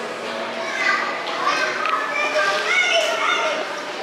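Children's voices, several children talking and calling out over a background of crowd chatter.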